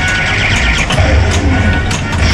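Bally Attack from Mars pinball machine in play: its electronic music and sweeping sci-fi sound effects, with sharp clicks from the playfield.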